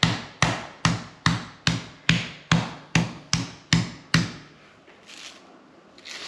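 Metal meat tenderizer mallet pounding top sirloin steak through plastic wrap on a metal baking pan. The blows are steady and even, about two and a half a second, roughly eleven in all, and stop about four seconds in.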